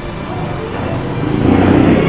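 Background music with a motorcycle engine growing louder near the end, as a scooter rides in.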